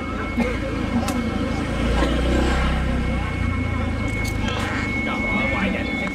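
A motor scooter passing close by, its engine rumble swelling to its loudest about two seconds in and then fading, with voices chattering around it.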